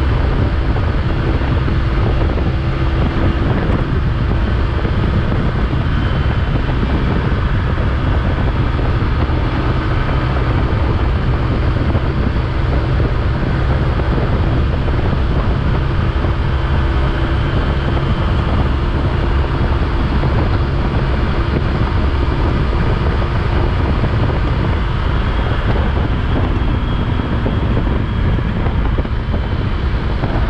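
Steady wind rush on the microphone over the drone of a motorcycle riding at road speed on a wet road, unbroken throughout.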